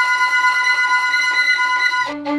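Background film-score music: one high chord held steadily, without a beat.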